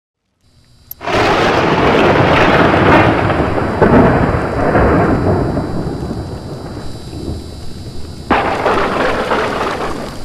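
Thunder sound effect with rain: a loud rumbling crash about a second in that slowly dies away, then a second sudden crash near the end that cuts off abruptly.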